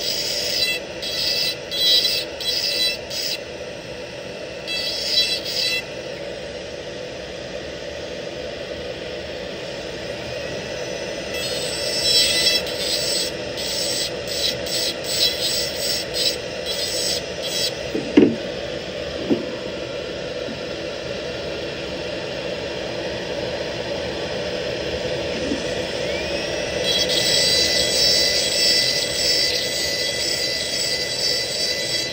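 Dental lab handpiece running steadily with a rotary bur against a polished metal implant bar, with spells of brighter, higher grinding noise as the bur works the metal.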